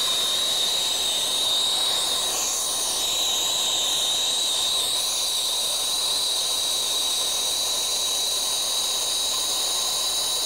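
Harris Inferno brazing torch tip burning steadily: an even, hissing rush of flame with a steady high whistle held over it.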